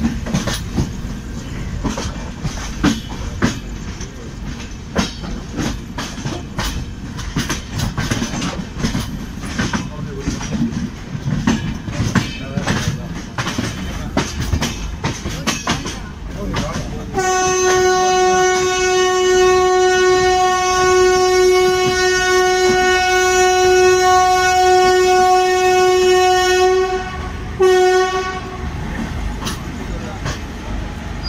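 Mysuru–Chennai Shatabdi Express running at speed, its wheels clattering over rail joints and points in a fast, uneven run of clicks. About 17 seconds in, a locomotive horn sounds one long, steady blast lasting about ten seconds, then a short second blast near the end.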